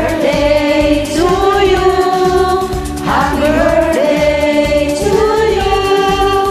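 Singing over a karaoke backing track, with long held notes in phrases of about two seconds each.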